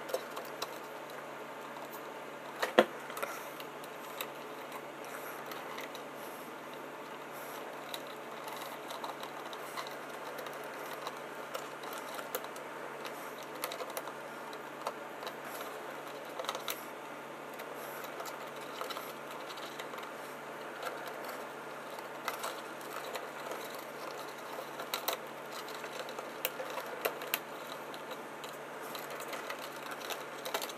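Small scattered clicks and plastic handling noises of fingers pressing thermostat wires into the push-in connector terminals of a Nest thermostat base, with one sharper click about three seconds in, over a steady low hiss.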